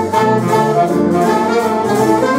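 Big band playing a jazz chart, with the brass and saxophone sections sounding together in held and moving notes.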